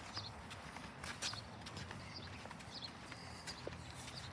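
Faint footsteps on a concrete sidewalk at walking pace, light taps of shoes roughly once a second over a low rumble.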